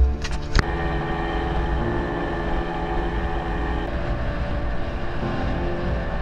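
Inflatable dinghy's outboard motor running steadily, with a few sharp knocks in the first half-second.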